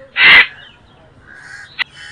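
A single short, harsh vocal burst, loud and rasping, followed near the end by a faint sharp click.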